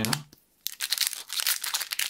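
Foil Pokémon booster pack wrapper crinkling and tearing as it is gripped and pulled open, a dense run of crackles starting just over half a second in.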